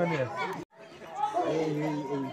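Several people talking and chattering together. A little over half a second in, the sound drops out briefly before the voices go on.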